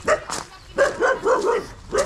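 Dog barking, a quick series of short barks.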